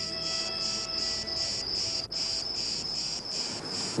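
An insect chirping in even pulses, about three a second, over faint sustained music notes that fade out about halfway through.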